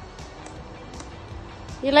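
Quiet background music, with a voice starting to speak near the end.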